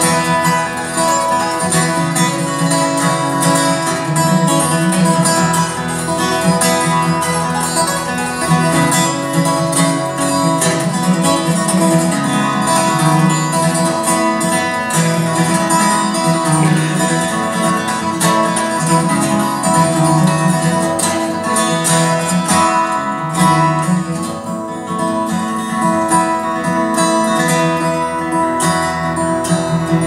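Solo steel-string acoustic guitar played continuously in an instrumental passage, with no singing.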